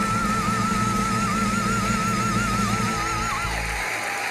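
A woman's voice holding a long, high final note with wide vibrato over a symphonic band's sustained closing chord. The voice cuts off about three and a half seconds in, and the band stops just before the end.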